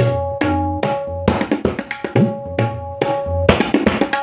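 Tabla solo playing an Ajrada kayda in chatasra jati: a run of crisp strokes on the tuned dayan that rings at a steady pitch, over sustained bass strokes from the metal bayan, one of which bends in pitch about two seconds in.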